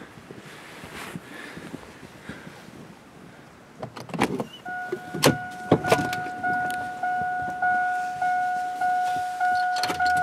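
A vehicle door unlatching and swinging open with a few knocks and clicks about four seconds in, followed by the van's door-open warning chime repeating steadily at a little under two chimes a second.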